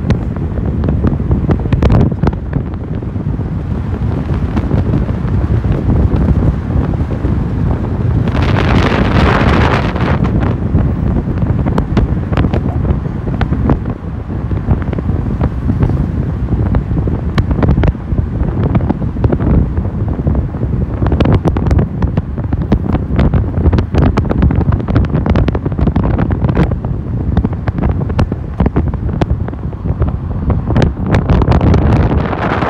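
Wind buffeting the microphone of a phone filming from a moving car, over a steady low rumble of road noise. A louder rush of noise comes about eight seconds in and lasts a couple of seconds.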